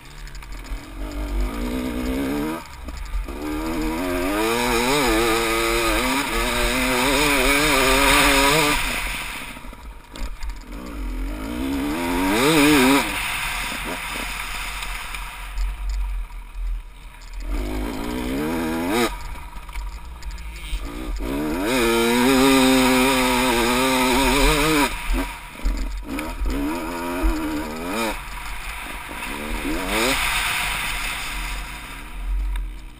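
Off-road dirt bike engine, heard from the rider's seat, revving hard in two long pulls with its pitch climbing and wavering as it goes through the gears. The engine drops back off the throttle between the pulls.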